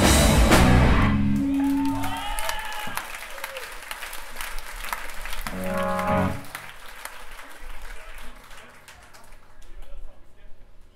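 A live crust-punk band, with distorted electric guitars and drums, plays the last crash of a song, which ends about a second in and rings off. The crowd then cheers and applauds, with a few short pitched shouts or ringing notes, and the cheering fades toward the end.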